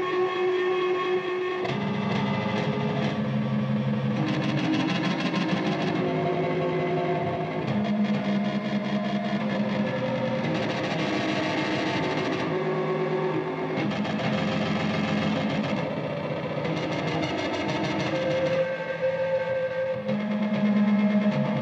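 Ambient instrumental music built from sampled, detuned electric guitar run through effects: layered held notes that change every couple of seconds.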